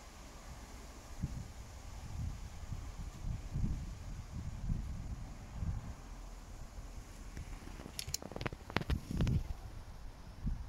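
Wind buffeting the phone's microphone in low, uneven rumbling gusts. A few sharp clicks near the end, from the phone being handled.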